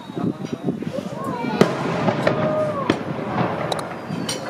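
Fireworks going off: several sharp bangs, the loudest about a second and a half in, over the chatter of a crowd of onlookers.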